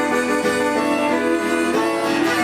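Electric guitar and acoustic guitar playing an instrumental blues passage together, with long held notes.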